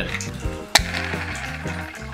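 A plastic board-game spinner is flicked with a sharp click about three-quarters of a second in, then spins with a steady rasp. Background music with a bass line plays under it.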